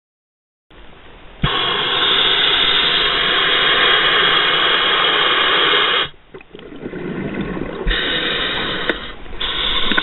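Scuba diver's regulator exhaust bubbles recorded by an underwater camera: two long bursts of rushing bubble noise, about a second and a half in and again near the end, with quieter breathing hiss between them.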